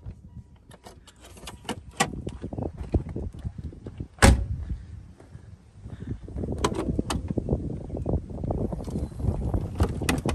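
Handling noise from a 1985 C4 Corvette as its hood is released and opened: a few light clicks, one loud sharp knock about four seconds in, then a run of knocks and rustling as the clamshell hood is lifted.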